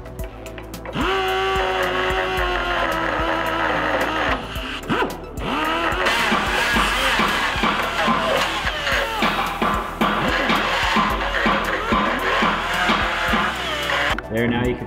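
Background music, with a power tool whirring as it cuts aluminum out of the traction bar to make room for the lower control arm bolt.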